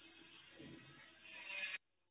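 Faint hiss of an open microphone on a video call, with a few faint low sounds, then a short louder burst of noise near the end before the sound cuts off suddenly to near silence.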